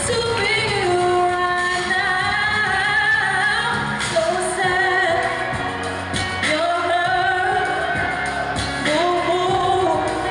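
Live solo vocal sung into a handheld microphone over instrumental accompaniment, with long held notes that waver in pitch.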